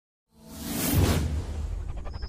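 Logo-intro whoosh sound effect: after a moment of silence a whoosh swells to a peak about a second in and fades, over a steady deep bass rumble.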